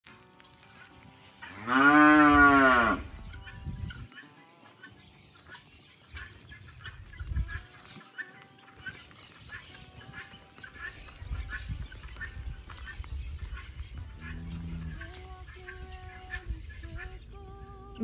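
A cow mooing: one loud, drawn-out moo about two seconds in, rising and then falling in pitch.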